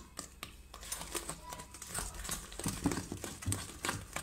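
Silicone spatula stirring and folding thick cake batter in a stainless steel bowl: irregular scrapes against the metal and wet smacks of the batter.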